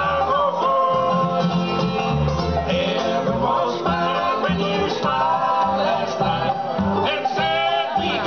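A bluegrass band playing live with no singing: upright bass notes pulse underneath steady acoustic guitar and other picked string instruments.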